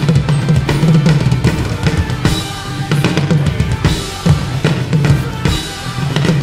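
Rock drum kit played in a driving beat, with bass drum, snare and cymbals, together with a marching snare. They play over the song's recorded backing track.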